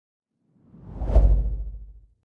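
A single whoosh sound effect with a deep rumble, swelling up to a peak about a second in and dying away near the end.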